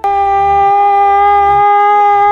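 A man yelling one loud, long note at a steady pitch, starting suddenly.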